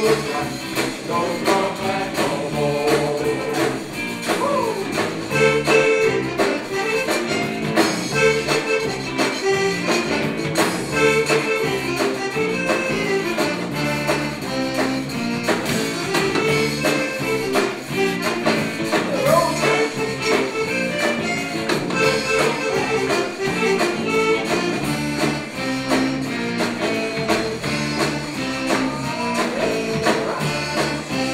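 A zydeco band playing an up-tempo number with a steady beat: piano accordion, electric guitars, bass, drums and a rubboard (frottoir) scraped in rhythm.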